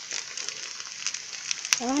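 Sardine-and-cracker patties sizzling in oil on a flat nonstick griddle: a steady frying hiss with small crackles and one sharp pop near the end.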